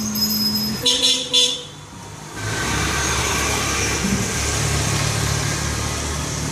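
Street traffic: a vehicle horn sounds, a held note followed by two short toots in the first second and a half. Then a motor vehicle engine runs steadily.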